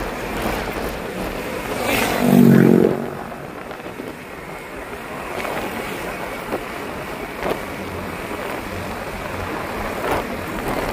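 Wind rushing over the microphone and a scooter engine running while riding in a group along a road, with one brief, louder pitched sound about two seconds in.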